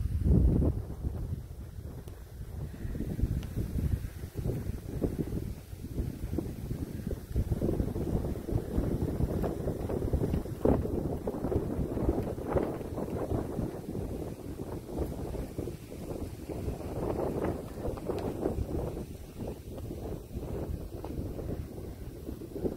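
Wind buffeting the microphone in uneven gusts, a low rumbling rush that swells and eases throughout.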